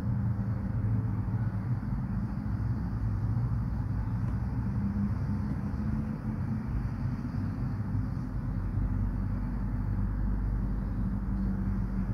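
Steady low background hum with a faint steady tone in it, with no clear events.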